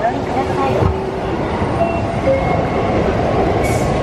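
Steady rumble of a train in a railway station, with people's voices faintly in the background.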